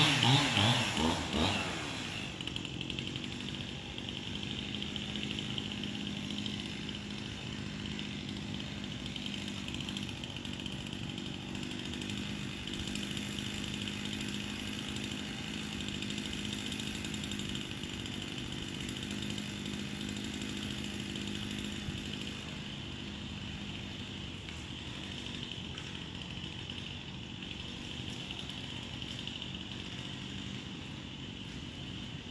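Chainsaw winding down from higher revs about two seconds in, then running on with a steady, even drone.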